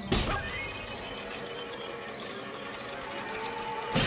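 Cartoon sound effects over orchestral music: a sharp hit right at the start, then a cartoon cat's startled cry of pain over the music, and another hit at the end as the barbell comes down.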